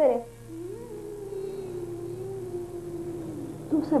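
Background music: one long held note with a slight waver, starting about half a second in and carrying on under the next line of dialogue.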